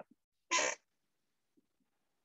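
A single short breath or mouth noise from the presenter about half a second in, then near silence.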